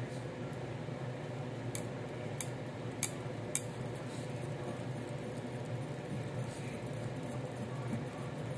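A metal utensil stirring thick gram-flour batter in a glass measuring cup, with a few sharp clicks of metal against glass, most of them in the first half. A steady low hum runs underneath.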